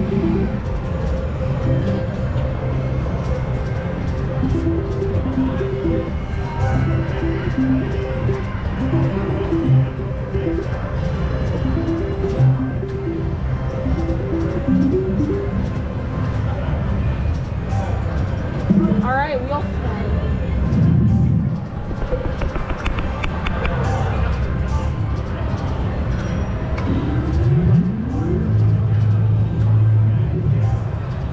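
Reel Hot 7s Classic slot machine sound effects: short repeated electronic notes play as the reels spin. Later come rising sweeps, about two-thirds of the way in and again near the end, as three wheel symbols trigger the wheel bonus. All of it sounds over casino background noise.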